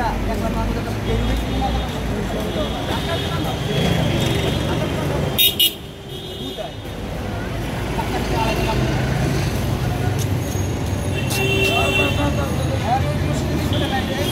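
Busy street ambience: road traffic running with a steady low rumble under the voices of a crowd, and a short vehicle horn toot about eleven seconds in. Two sharp knocks land just past the five-second mark, the loudest thing here.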